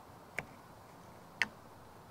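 Two short plastic clicks about a second apart, the second louder, as a 3D-printed CamWipe brush is pressed onto the rear wiper arm over the bolt and snaps into place.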